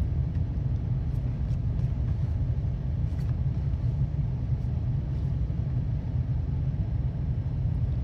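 Steady low background rumble, with a few faint light clicks of trading cards being handled.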